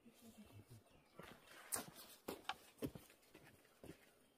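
A handful of irregular sharp knocks and clacks, five or six in all, starting about a second in over a quiet outdoor background.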